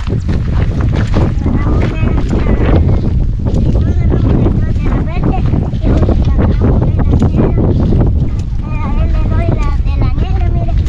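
Wind buffeting the microphone, a loud steady low rumble, with footsteps on a dry dirt path.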